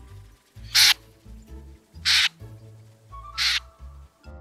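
Common snipe giving its sharp flush call: three short, harsh single notes about 1.3 seconds apart. This is the alarm note a snipe utters as it is flushed and flies off.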